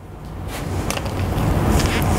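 Rustling handling noise with a low rumble and a few small clicks, growing steadily louder, as a black HDMI cable is handled and uncoiled.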